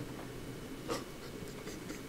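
A pause in a man's speech: quiet room tone with one short breath noise about a second in, as he is overcome with emotion and near tears.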